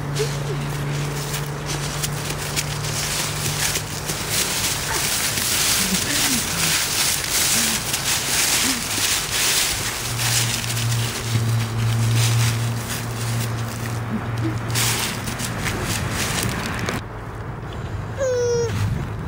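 Dry fallen leaves crunching and rustling underfoot as people walk through them, a dense run of crackles that thins out near the end, over a steady low hum.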